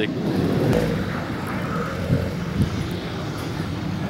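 A car engine running under power as the car drifts around a packed-snow course, heard from a distance as a steady drone.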